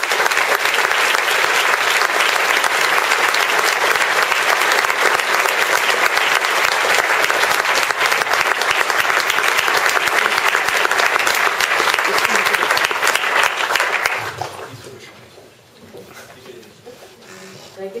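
Audience applause, steady and sustained, fading out about fourteen seconds in.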